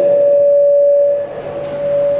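Audio feedback from the microphone and loudspeaker system: a steady ringing tone held at one pitch, louder at first and easing off after about a second.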